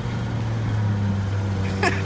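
Steady low hum of a vehicle engine running.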